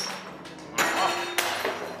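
Two heavy hammer blows with a crashing ring, the first about three quarters of a second in and the second half a second later.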